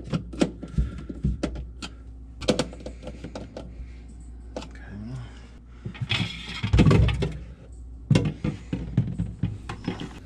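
Clicks and knocks of hard plastic refrigerator parts being handled and fitted inside the freezer compartment. About six seconds in comes a longer scraping noise as a slotted plastic part is slid into place.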